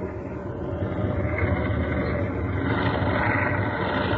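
Radio-drama sound effect of vehicles on the move: a steady low mechanical rumble that slowly grows louder, standing for the tumblebugs carrying the men north.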